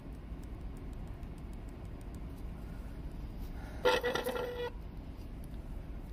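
White gel pen tip tapping dots onto drawing paper in quick, faint, irregular ticks while stippling. About four seconds in, a short, steady-pitched toot sounds for under a second, louder than the tapping.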